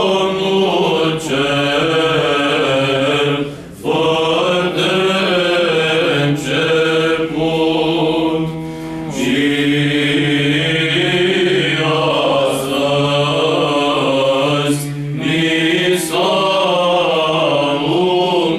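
Small male choir singing a Romanian Christmas carol (colind) unaccompanied, in a slow chant-like style, with brief pauses between phrases.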